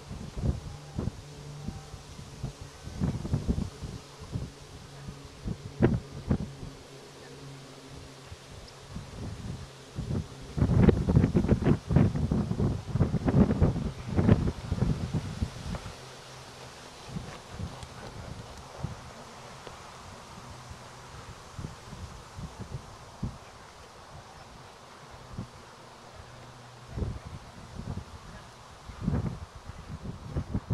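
Wind buffeting the microphone in irregular gusts, loudest about a third of the way through, with a low steady hum beneath for much of the time.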